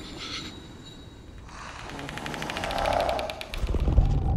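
Film-trailer sound design: a fast, even rattling clicking that swells louder over about two seconds over a low rumble, dipping briefly just before the end.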